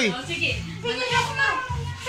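Several adult voices chattering over one another at once, over background music.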